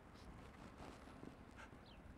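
Near silence: faint background noise, with a few faint short high chirps near the end.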